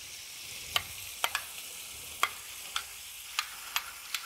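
Chunks of beef browning in oil in a pot: a steady sizzle broken by scattered sharp spitting pops.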